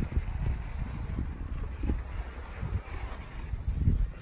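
Wind rumbling on the microphone outdoors: a steady low buffeting noise that rises and falls a little.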